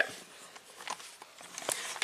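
Faint rustling with a couple of light clicks: a handheld camera being handled and turned around.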